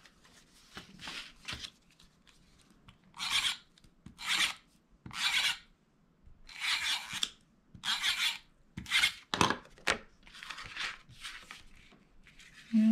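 Tape runner laying double-sided adhesive along the back of a paper mat: a string of short rasping strokes, about ten of them, beginning about three seconds in.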